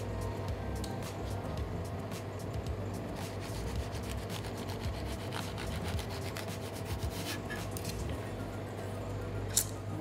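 A kitchen knife sawing sideways through a layer of cherry tomatoes held flat under a hand on a plastic cutting board, a run of small rubbing and clicking strokes. Background music plays underneath.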